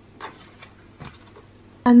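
A silicone spatula spreading thick cream in a metal baking tin: two short, soft scrapes, about a quarter second and about a second in. A woman starts speaking near the end.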